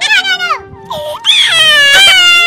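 A child's quick laughter trails off. About a second later a child starts a long, loud wail whose pitch slowly falls.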